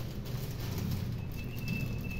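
Faint clicks and taps of an eyeshadow palette and makeup brush being handled, over a steady low hum, with a thin high steady tone entering past the middle.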